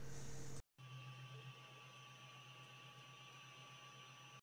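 Near silence: a faint, steady low hum with a few thin steady tones above it, broken by a brief moment of total silence about half a second in.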